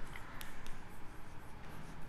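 Chalk writing on a blackboard: soft scratching strokes with two sharp taps a little under a second in.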